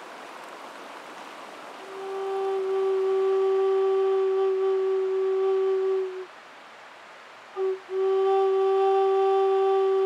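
A stream rushes steadily. About two seconds in, a wooden Native American-style flute comes in, holding one long, steady low note for about four seconds. It breaks off, gives a short blip, then takes up the same note again and holds it.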